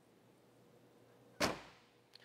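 A single sharp thump about one and a half seconds in, fading quickly: the fibreglass door of a 1964 Porsche 904 GTS being pushed shut.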